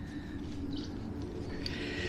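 Faint bird chirps, a few short high notes near the start and again near the end, over a steady low background hum.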